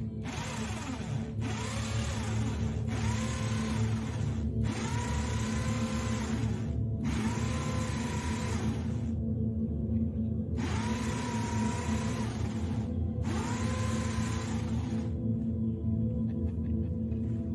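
Cordless drill boring a round entrance hole through a wooden board, run in about seven bursts of one to two seconds each, with a longer pause about two-thirds of the way through; the motor whine rises as each burst spins up, then holds. Background music plays underneath.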